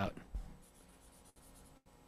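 A man's speech trails off right at the start, followed by near silence with only faint room tone and a soft rustle.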